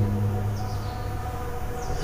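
Steady low background hum with a few faint, held higher tones, in a pause between spoken words.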